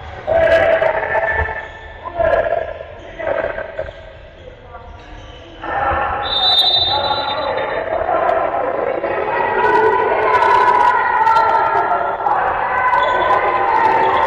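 A handball bouncing on the sports hall floor, with players and spectators shouting. The voices swell about six seconds in and stay loud.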